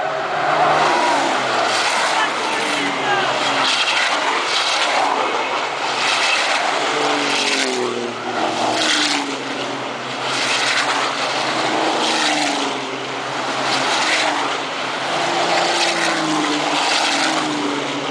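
Field of turbo-diesel Formula Truck racing trucks passing on the circuit. The loud engine noise is sustained, and repeated engine notes fall in pitch as each truck goes by.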